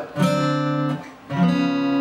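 Steel-string acoustic guitar playing two strummed ninth chords, each left to ring. They step chromatically down from D toward C9: the first comes just after the start and fades within a second, the second comes about a second and a half in and keeps ringing.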